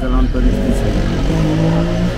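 A motor vehicle engine running, with a man's voice over it; a steady low tone holds near the end.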